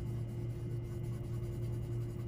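Steady low electrical hum, with faint scrubbing of a cotton swab rubbing oil pastel into paper.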